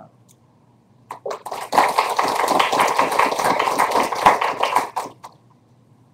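Audience applauding: a few scattered claps about a second in, then dense applause for about three and a half seconds that stops fairly suddenly.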